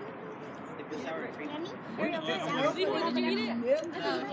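Several people talking and chattering over one another, the words indistinct, livelier in the second half.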